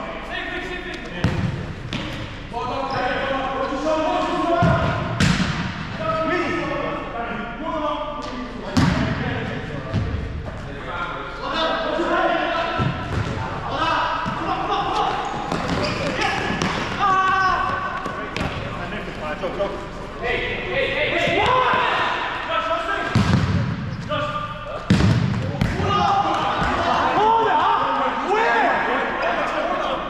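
A futsal ball is kicked and strikes a hard sports-hall floor with irregular thuds, every few seconds, over players' shouts and calls that echo through the large hall.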